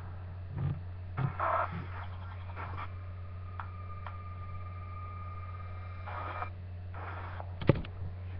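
Steady low electrical hum from a webcam microphone, with a few bursts of rustling from movement close to the camera. A steady high tone sounds for about three seconds in the middle, and one sharp knock comes near the end.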